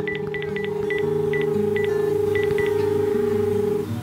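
Telephone being dialled: about ten quick keypad beeps in the first three seconds over a steady dial tone, which cuts off shortly before the end.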